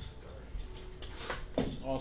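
Brief rustling and scraping of cardboard trading-card hobby boxes being handled on a desk, about a second in, followed near the end by a man starting to speak.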